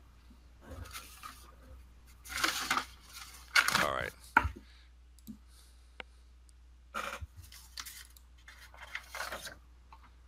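A few sharp single clicks and short bursts of rustling noise in a small room, most likely a computer mouse seeking through a video, with a voice saying "all right" about four seconds in.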